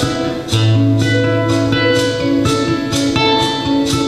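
Solo acoustic guitar played live, a flowing run of plucked notes over a deep bass note that starts about half a second in and rings on.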